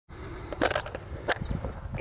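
Outdoor field ambience: a low, uneven rumble of wind on the microphone, with a few short clicks or rustles, a cluster just past half a second in and one more later on.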